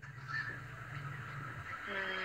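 Faint low background hum from the stream's audio while nobody talks, then near the end a person starts a steady, level hummed "mmm" tone.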